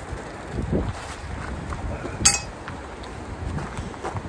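Wind buffeting the microphone, with one sharp metallic clank about two seconds in as a bicycle frame just hauled out of the water is handled and set down.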